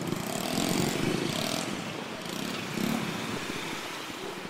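Street traffic of motorcycles and cars running close by in a queue, a steady rumble that swells about a second in as a vehicle passes.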